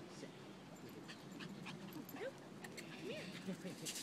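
A dog whining faintly: several short rising-and-falling cries in the second half, among a few light clicks.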